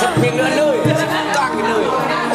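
Several men chatting casually over one another, with music playing in the background.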